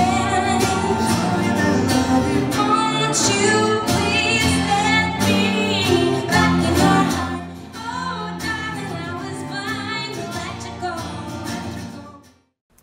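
A woman singing live to acoustic guitar and cello. The music gets quieter about seven and a half seconds in and drops away at the end.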